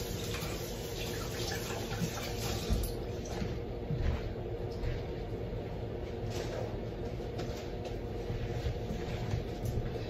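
Kitchen sink tap running steadily while gloved hands are rinsed under it, with a few faint knocks.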